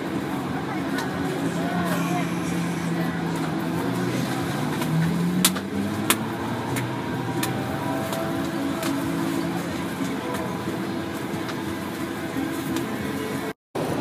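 Busy street-food stall ambience: indistinct background voices over a steady low hum, with two sharp knocks about five and six seconds in.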